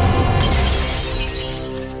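Glass shattering as a sound effect about half a second in, its tinkling fading over about a second, over dark theme music with held low notes.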